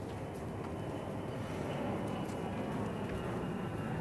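A steady low rumble of background noise, with a few faint clicks and a thin faint tone coming in about halfway through.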